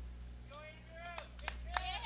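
Faint distant voices over a steady low hum, with a few light clicks in the second half.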